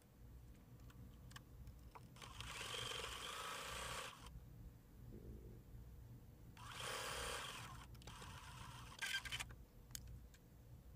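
Computerized sewing machine stitching a seam through denim in two short runs, the first about two seconds long and the second about one second, with a few clicks near the end.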